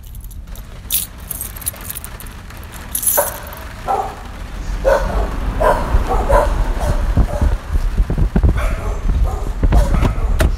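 A run of short, sharp animal calls, about one a second, starting about three seconds in, over a low rumble that grows louder toward the end.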